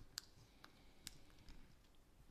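Near silence with a few faint, sharp clicks, the first the sharpest: small handling noises of the priest's hands at the paten and chalice.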